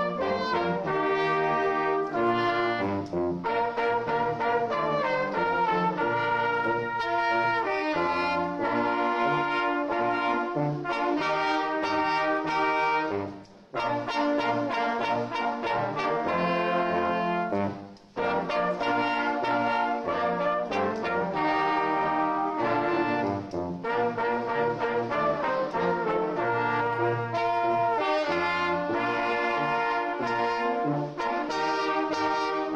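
Brass band, with tubas and horns, playing a slow piece in sustained chords. The music breaks off briefly twice around the middle.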